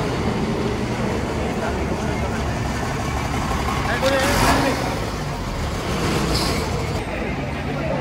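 MSRTC ST diesel bus engines running in a depot yard, a steady low rumble as a bus moves past, with a short burst of hiss about halfway through. People's voices mix in.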